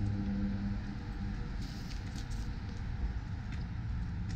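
Steady low outdoor rumble, with a few faint rustles and ticks around the middle.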